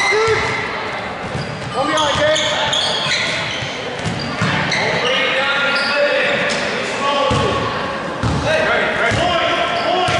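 Basketball bouncing on a hardwood gym floor, with several dribbles in the last few seconds, among echoing voices of players and spectators in a large gymnasium.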